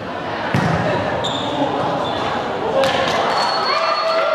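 Volleyball struck twice during a rally, sharp hits about two seconds apart, ringing in the reverberant sports hall over players' and spectators' voices, with a raised shout near the end as the point is won.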